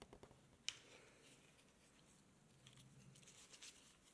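Small carving knife scoring a line into a green-wood spoon: faint, short, crisp cutting scrapes, with one sharp click just before a second in and a run of quick little cuts near the end.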